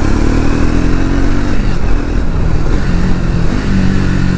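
Triumph Speed 400's single-cylinder engine and exhaust on a slow ride. The note holds steady, eases off about halfway, and picks up again at a lower pitch near the end.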